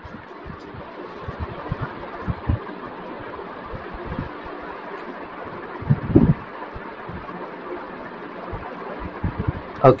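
Steady hiss of a desk microphone in a quiet room, with faint low knocks scattered through it and one brief, louder low sound about six seconds in.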